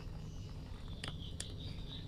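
Faint handling of strawberry plant leaves and stems while picking a fruit, with two small clicks a little after a second in, over a quiet outdoor background.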